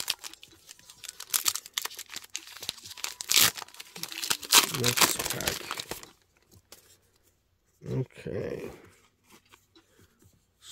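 Pokémon booster pack wrappers being torn open and crinkled, with about six seconds of irregular ripping and rustling.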